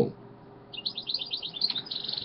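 A small bird chirping in a quick run of short, high chirps, about eight a second, starting just under a second in.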